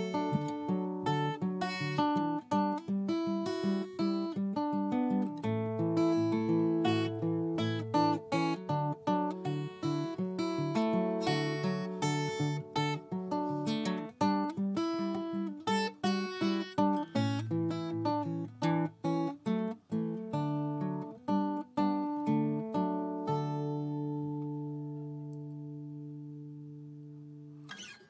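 Solo acoustic guitar playing an instrumental outro of picked notes and strummed chords. It ends on a final chord about five seconds before the end, which is left to ring and fade away.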